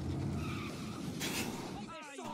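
Cartoon stock cars racing, their engines running steadily, with a brief, loud screech of skidding tyres about a second and a quarter in as the cars pile up in a crash.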